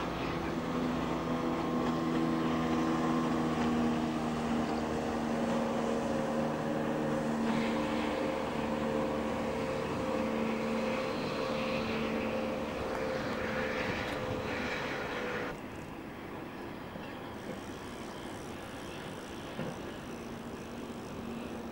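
An engine drones steadily, its pitch drifting slightly, and cuts off abruptly about three-quarters of the way through, leaving a lower wash of outdoor noise.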